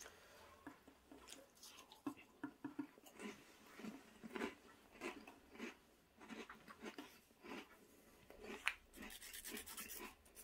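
Faint, irregular small crunches and clicks from dry baked cheese-biscuit sticks, a little busier near the end.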